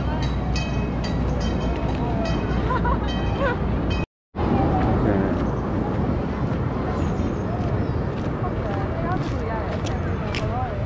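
Indistinct voices of people talking over the general noise of a busy outdoor walkway. The sound cuts out completely for a moment about four seconds in.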